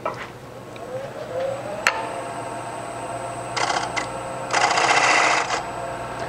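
A Robust wood lathe spinning up, its whine rising over the first two seconds and then holding steady. After that a bowl gouge cuts the outside of the spinning bowl blank twice: a short cut about three and a half seconds in, then a louder cut of about a second.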